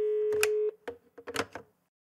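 Electronic sound design for an animated title card: a steady buzzy tone that cuts off abruptly under a second in, followed by a few sharp glitchy clicks, then silence.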